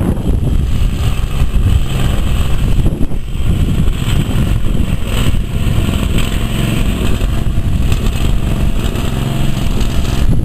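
A Cub Cadet garden tractor's 18 hp engine running steadily under load as the tractor pushes gravel with its front blade.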